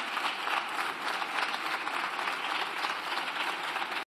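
Deputies in a parliamentary chamber applauding: many hands clapping together, steady and unbroken.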